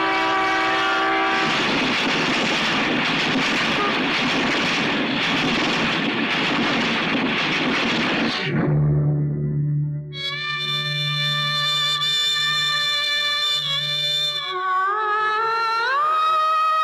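A train roaring past, with a short horn-like blast at the start. About halfway through it gives way to dramatic film score: sustained synthesizer tones over a low drone, gliding upward near the end.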